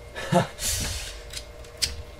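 Nylon waist strap and plastic buckle of a fanny pack being handled: a brief rustle of the strap, then a couple of light plastic clicks.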